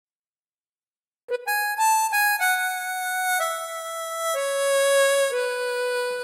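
Solo wind instrument playing a slow lullaby melody alone, beginning after about a second of silence: long held notes that step mostly downward.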